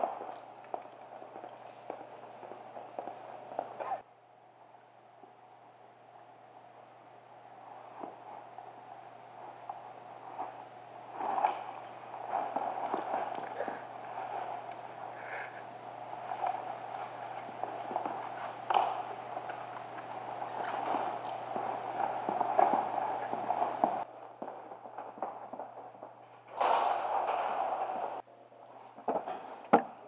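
Firefighters getting into turnout gear: fabric rustling, footsteps and scattered knocks and clicks over a steady low hum. The sound changes abruptly several times as the scene cuts.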